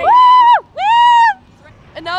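Two loud, high-pitched squeals from a young woman, each about half a second long with a short gap between, in a burst of laughter.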